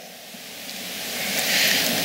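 Congregation applauding, swelling steadily louder over the two seconds.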